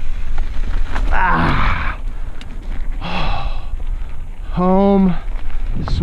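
Mountain bike rolling downhill over dirt and gravel, with a steady low rumble of wind on the microphone and tyre noise. The rider lets out a short held vocal sound near the end.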